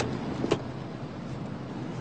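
Traffic noise from a city street, with one sharp click about half a second in.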